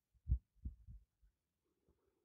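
Three soft, low thumps in quick succession within the first second.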